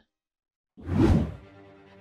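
A moment of silence, then a single whoosh transition sound effect that swells and fades about a second in, followed by faint music.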